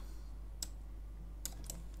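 A few light clicks of computer keys: one about half a second in, then two or three close together near the end, over a low steady hum.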